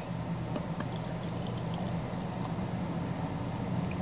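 Beer being poured from a bottle into a mug, over a steady low background hum.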